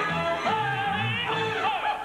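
A woman's singing voice in a stage musical number over band accompaniment: a high note held for most of a second, then a quick swooping slide up and down, with a bass line underneath.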